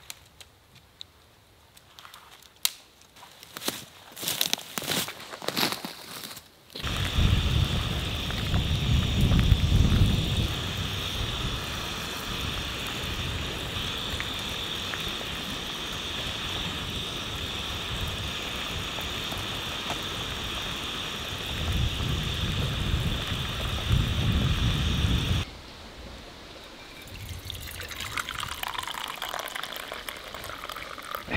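A few scattered clicks and rustles, then a canister gas stove's burner starts suddenly and runs as a steady hiss with a low rumble under a pot of water, cutting off sharply about three quarters of the way through. Near the end, tea is poured into an enamel mug, rising in pitch as it fills.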